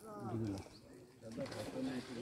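People's voices talking in two short stretches, with a pause in the middle.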